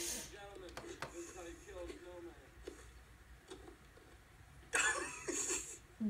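Faint, indistinct voices from a video playing through a laptop's speakers, with a short louder burst of noise about five seconds in.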